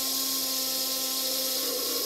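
Steady hiss from a Stuart S50 model steam plant, the gas burner turned down under the boiler while steam is let off, with a faint steady hum beneath.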